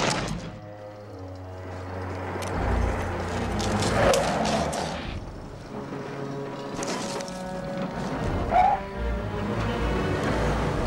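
Movie soundtrack from a dinosaur attack scene: music and sound effects, with a loud cry about four seconds in and another near the end.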